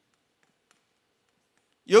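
Near silence with one or two faint clicks of chalk on a blackboard; a man's voice starts near the end.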